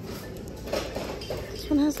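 Glass and ceramic pieces clinking and knocking lightly in a shopping cart as items are handled, with a few light knocks about a second in.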